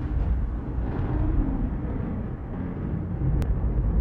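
Deep, low rumble of an intro soundtrack, noisy and without clear tones, with a single sharp tick about three and a half seconds in.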